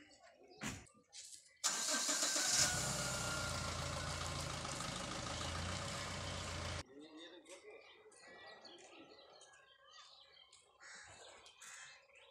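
A vehicle engine is cranked and catches, then runs close by, loud and steady. It cuts off suddenly about seven seconds in, leaving faint background sounds.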